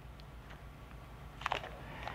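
Faint, brief crackle about one and a half seconds in, from protective plastic film being peeled off a newly installed bull bar, over a steady low room hum.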